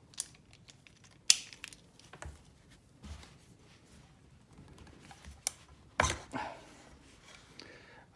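Scattered clicks and light knocks of rifle parts being handled as a wooden Remington 1100 stock is worked off the buffer tube of a Fightlite SCR lower receiver. One sharp click comes about a second in, and another knock near six seconds.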